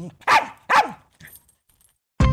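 Small dog barking twice, about half a second apart, each bark falling in pitch.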